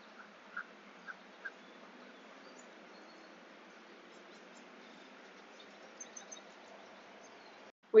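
Faint outdoor marsh ambience: a bird gives a few short calls, about two a second, in the first second and a half, and a few faint high chirps come about six seconds in, over a steady low background hiss.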